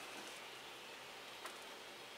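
Faint rustling of chunky potting chips being pressed and tucked by hand around an orchid in a small plastic pot, with one small click about a second and a half in, over a steady faint hiss.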